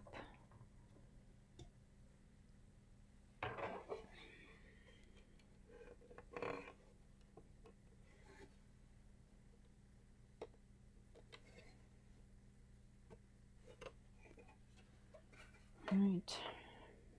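Faint handling noise as a CD changer's plastic housing and parts are fitted back together: scattered light clicks and knocks, with two louder clatters about three and a half and six and a half seconds in.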